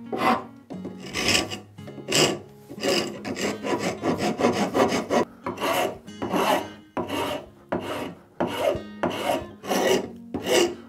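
A round rasp scraping back and forth across a zebrawood plane-tote blank to shape its curves. There are about one to two strokes a second, with a quicker flurry around the middle.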